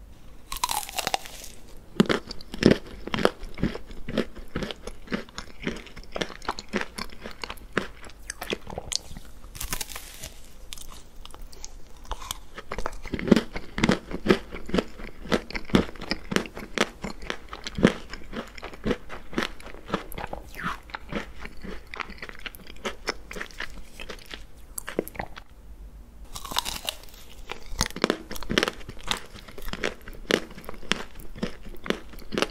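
Close-up crunching and chewing of a chocolate ice cream cone: the hard chocolate coating and crisp wafer cone crackle in a dense run of sharp clicks as it is bitten and chewed, with a few louder bites.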